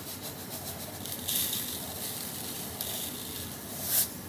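Lye (sodium hydroxide) granules sprinkled from a plastic pitcher onto frozen milk cubes in a plastic mixing cup: a dry, hissing trickle starting about a second in and lasting about a second and a half, with a light knock near the end.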